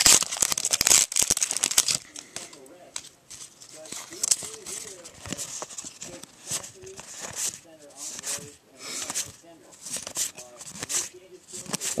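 A foil booster-pack wrapper crinkles and tears open in a loud crackling run for about the first two seconds. Then come soft, repeated swishes of trading cards sliding against each other as they are flipped through one by one.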